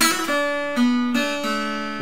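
Acoustic guitar in open D tuning playing a short run of about five single notes that go back and forth between neighbouring pitches, the fretting fingers changing notes over ringing strings.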